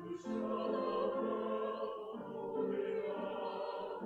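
A choir singing sustained chords, with a brief break for breath at the very start.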